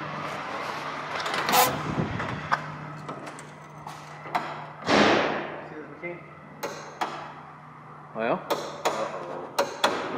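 Handling and walking knocks, then several sharp clicks of wall light switches being flipped near the end, over a steady low hum. The switched circuits are still dead, so the clicks bring nothing on.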